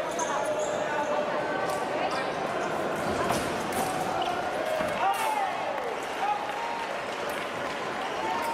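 Fencers' shoes squeaking and stamping on the piste during a foil bout, with short gliding squeaks, the loudest just past the middle, and scattered sharp clicks. A steady murmur of voices from a large indoor hall runs underneath.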